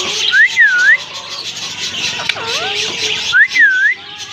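An Alexandrine parakeet whistling the same short phrase twice, about three seconds apart: a quick rising note, then a note that dips and rises again.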